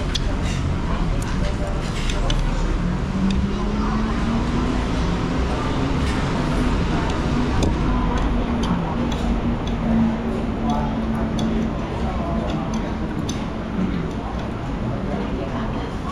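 Eatery ambience by a road: a low traffic rumble with a steady engine-like hum through the middle, light clicks and clinks of crab shell and tableware being handled, and murmured voices.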